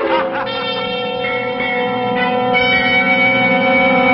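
Sustained bell-like tones: a chord rings steadily after laughter stops, with new notes entering about one and two and a half seconds in.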